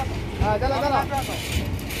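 A person speaking briefly over a steady low rumble of train and platform noise.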